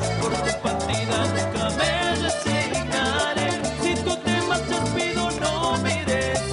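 Cumbia band playing live with a steady dance beat: accordion, electric guitar and percussion, with a male singer into a microphone.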